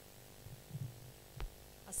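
Steady electrical mains hum from the public-address sound system, with a low murmur underneath and a single sharp knock about three quarters of the way through. A woman starts speaking right at the end.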